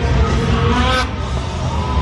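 Snowmobile engine running loudly with a deep low rumble, with a short brighter surge about a second in, as the machine is flown through a freestyle jump.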